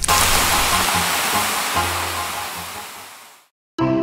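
A loud rushing hiss that starts suddenly and fades out over about three seconds, with music underneath.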